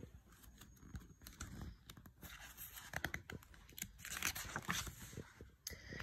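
Faint rustling and soft clicks of a picture book's paper pages being handled and turned.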